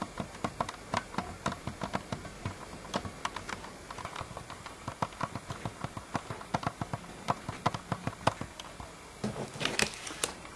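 Light, irregular clicking and tapping of plastic toys, several clicks a second, as a toy train and figures are moved by hand.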